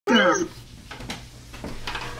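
A short, high-pitched cry with a wavering pitch, lasting about half a second at the very start, followed by quieter room sound with a few faint clicks.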